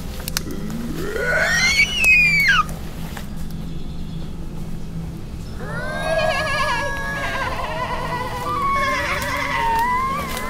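Human voices making animal-like cries: one loud shriek rising and then falling in pitch near the start, then from about halfway several voices wailing together with a wavering pitch.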